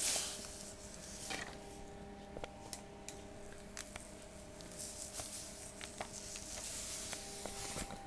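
Caster sugar poured from its bag into a clear bowl on a kitchen scale: a faint hiss of falling granules with soft rustling and a few small clicks.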